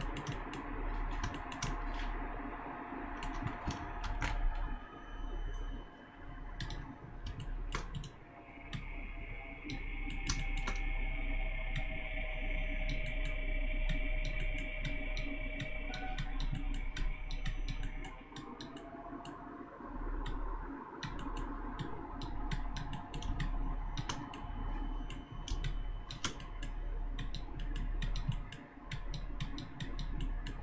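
Irregular clicks of a computer mouse and keyboard as a 3D model is sculpted and keyboard shortcuts are pressed, over a faint steady background hum with a higher tone for a while in the middle.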